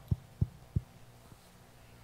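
Three short, soft low thumps in quick succession, about a third of a second apart, and a fainter one about a second later.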